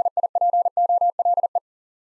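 A fast Morse code tone at 40 words per minute, one steady mid-pitched beep keyed into short and long pulses. It spells out the word DIPOLE and stops about a second and a half in.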